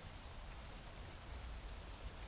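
Faint, steady hiss of light rain falling, with a low rumble underneath.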